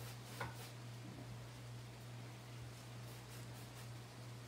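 Faint, repeated scratchy strokes of a nearly dry paintbrush rubbed back and forth on a stretched canvas, over a steady low hum.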